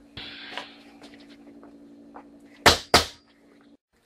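Handling noise from tools and objects being moved around a small steel safe, with two sharp knocks in quick succession about two and a half seconds in, over a steady low hum; the sound cuts off just before the end.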